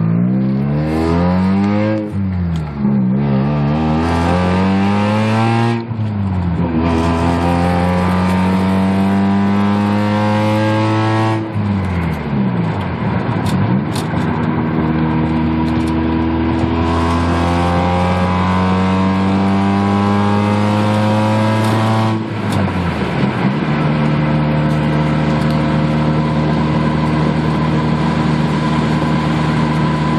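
1987 Mazda RX-7's naturally aspirated 13B two-rotor engine with headers and straight pipes, heard from inside the cabin while accelerating moderately through the gears. The engine note climbs steadily in pitch and drops briefly at three gear changes, then holds a steady cruising note near the end.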